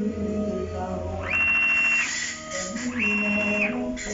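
Motor driving a ball-screw axis: a high whine rises in pitch, holds and falls again, twice, as the axis speeds up, runs and stops on each move. A steady low hum runs underneath.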